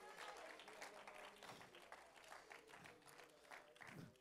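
Faint, scattered clapping from a church congregation in an otherwise near-silent room.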